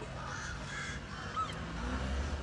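Two short bird calls, crow-like caws, over a steady low rumble of outdoor background noise.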